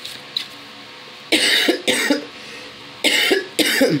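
A woman coughing: four loud, harsh coughs in two pairs, the first pair a little past a second in and the second pair near the end.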